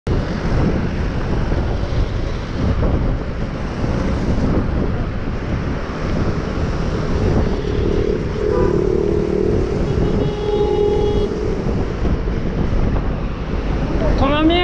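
Wind buffeting the microphone of a bicycle-mounted camera, with city traffic of cars and buses going by. A few brief steady tones sound in the middle.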